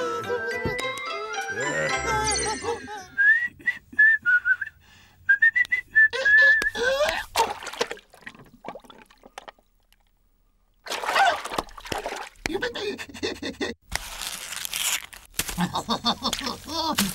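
Children's cartoon soundtrack: a bright music cue ends in a quick rising run, then a short whistled tune and a falling glide. After a couple of seconds of near silence, characters' babbling voices and cartoon sound effects start.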